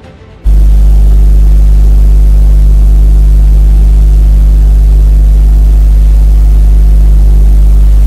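A very loud, steady low hum with hiss over it, cutting in suddenly about half a second in and holding unchanged after that.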